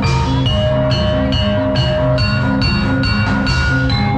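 Javanese gamelan-style music for a jathilan horse dance: repeating ringing metallophone notes over a steady drum pattern.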